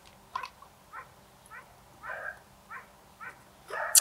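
A dog barking repeatedly in the background: about six short barks, roughly half a second apart.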